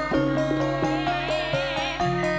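Campursari-style band music led by a Korg Pa600 arranger keyboard: bass and chord notes change steadily, and a high lead note wavers in a wide vibrato through the second half.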